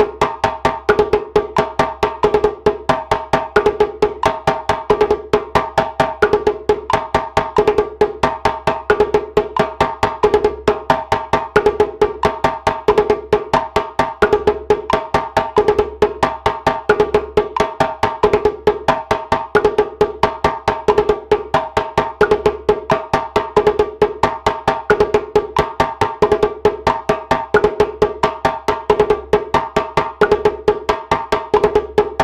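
Djembe played with bare hands: a repeating solo phrase of quick strokes at a steady 90 BPM.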